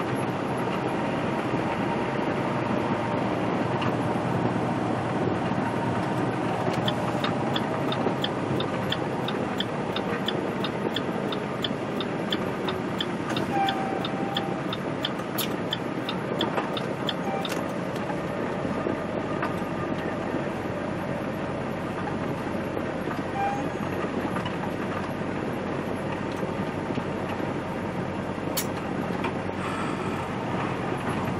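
Steady engine and road noise heard inside a moving semi-truck's cab. From about seven to seventeen seconds in, a light, even ticking comes through at roughly two to three ticks a second.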